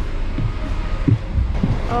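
Footsteps thudding down the metal-edged steps of a bus, several dull low thumps, over the steady low rumble of the bus.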